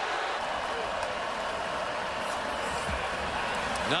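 Stadium crowd noise: a large crowd's steady din of many voices, even in level throughout.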